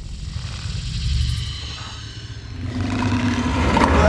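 Film trailer sound design: a low rumble with faint high sustained tones above it. It dips in the middle, then swells louder from about two and a half seconds in.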